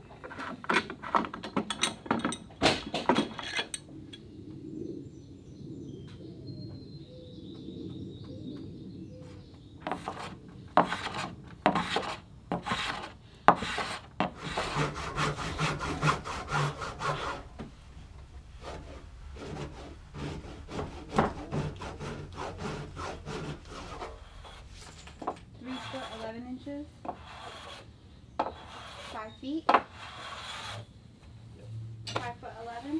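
Hand tools working a thick oak plank: runs of quick rasping, scraping strokes on the wood, in several bursts with pauses between them.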